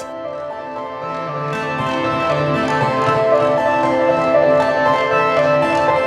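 Eurorack modular synthesizer playing layered ambient generative music. Many overlapping pitched notes come from a Rings resonator voice and a Morphogen sequence, with delay and reverb on them. The music grows gradually louder over the first couple of seconds.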